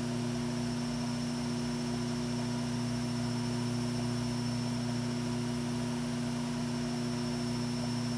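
A steady low hum with a layer of hiss, unchanging in pitch and level throughout.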